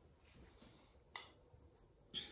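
Near silence: room tone, with one short faint click about a second in.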